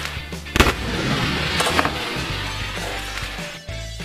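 A large rubber balloon bursting with a sharp bang about half a second in, followed by a few seconds of rustling noise, over background music.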